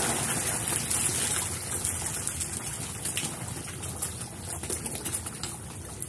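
Water splashing and churning as a dense shoal of fish crowds and thrashes at the surface of a pond, gradually fading.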